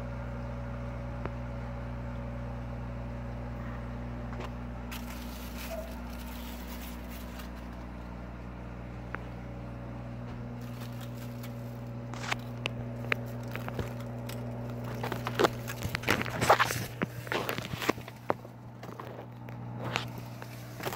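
Steady humming of a circulation fan in a grow tent. Over the second half come scattered rustles and brushing clicks, loudest a few seconds before the end, as cucumber leaves and vines brush against the phone.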